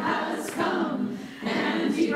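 Sopranos and altos of a choir singing a phrase of a gospel spiritual together, with a short break about a second and a half in before the next phrase begins.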